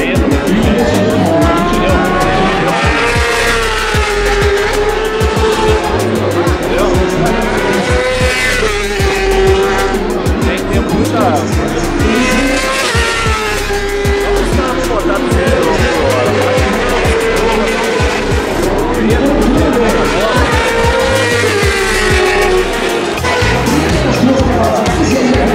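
Superbike racing engines at high revs, their pitch rising and falling again and again as bikes pass along the straight. Music from loudspeakers with a steady beat plays underneath.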